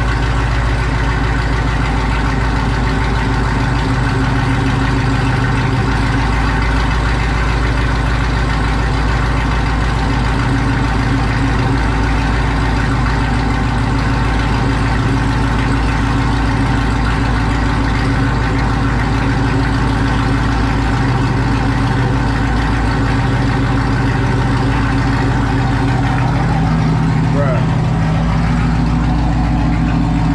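Sixth-generation Camaro SS's 6.2-litre LT1 V8 idling steadily just after a cold start on a freshly flashed E85 tune. The idle note changes slightly near the end.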